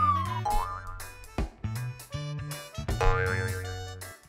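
Playful children's background music with a steady bass line, laid with cartoon-style pitch-glide effects: a falling glide at the start, a short rising one just after.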